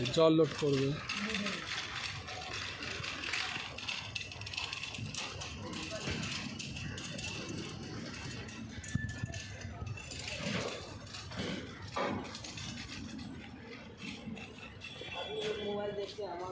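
Railway station noise: irregular rattling and clanking over a steady hiss, with a man's brief word at the start.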